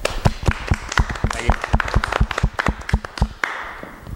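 A handful of people applauding with quick, uneven hand claps that thin out and stop about three and a half seconds in.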